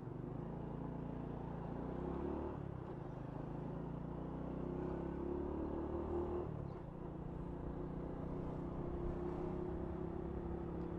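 Honda Wave 125's single-cylinder four-stroke engine heard from on the bike while riding. Its pitch climbs about two seconds in, dips briefly about six and a half seconds in, then holds steady.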